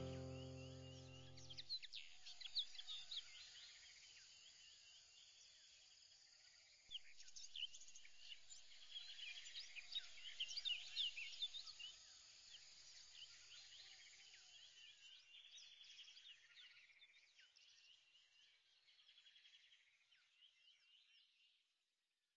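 The last notes of a background music track die away about two seconds in, followed by faint, high-pitched chirping that is densest in the middle and fades out near the end.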